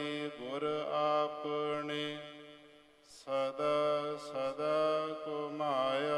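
Sikh devotional chanting of Gurbani, a voice gliding up into long held notes over a steady low drone. It dies away about two and a half seconds in and starts again a little after three seconds.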